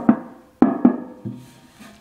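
Knuckles knocking on a hollow stainless-steel cube money box: a knock at the start, then two more in quick succession a little over half a second later, each with a short metallic ring.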